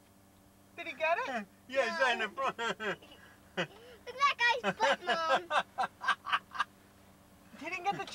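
Indistinct talking inside a car, in short stretches, some of it in a high voice, over a faint steady low hum.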